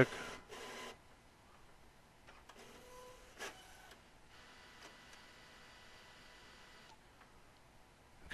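Epson WorkForce WF-7520 inkjet printer starting up after being switched off and on: faint mechanism noise, louder in the first second, with a sharp click about three and a half seconds in, then a low steady hum.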